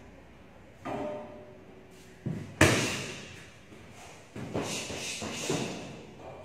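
Karate kicks and punches landing with thuds. The loudest is a sharp hit about two and a half seconds in, and a quick run of several more hits comes near the end.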